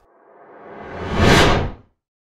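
A whoosh sound effect that builds steadily from faint to loud over about a second and a half, then stops quickly.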